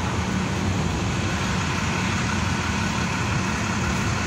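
City transit bus's diesel engine running steadily with a low hum.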